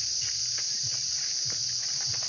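Steady, high-pitched chorus of insects in woodland, with a few faint footsteps on a dirt trail.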